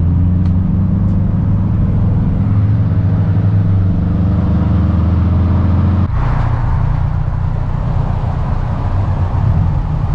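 Mitsubishi Lancer Evolution X's turbocharged four-cylinder, with aftermarket exhaust, running at a steady cruise, heard from inside the cabin as a low drone. About six seconds in the sound cuts to outside, where a car drives past with engine and tyre noise.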